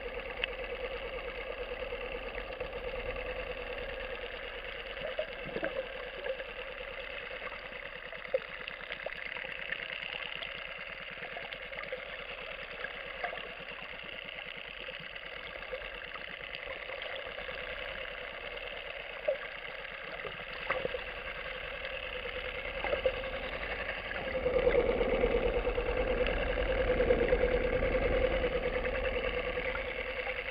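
A boat's engine heard underwater: a steady drone with one strong hum and several fainter tones above it, growing louder for a few seconds near the end as the boat comes closer. Scattered sharp clicks sound through it.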